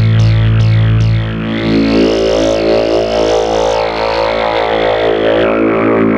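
Korg MS-20 analogue synthesizer playing a sustained, buzzy drone. At first it repeats fast downward filter sweeps about two and a half times a second over a low bass note, and both stop about a second in. A resonant filter peak then rises slowly, wavers high for a few seconds and falls back down near the end.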